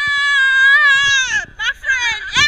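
A person's voice holding one long, high-pitched wail or sung note that dips and stops about a second and a half in, followed by short broken voice sounds.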